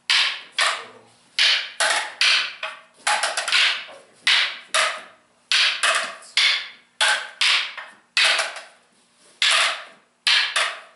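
Practice sticks clacking together as partners strike in a double-stick drill: a steady run of sharp clacks, about two a second and often in quick pairs or triplets.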